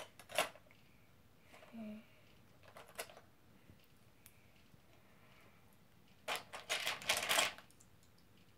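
Plastic Lego pieces clicking and rattling in a plastic storage bin as a hand rummages through them: a few scattered clicks, then a dense run of rattling for about a second near the end, the loudest part.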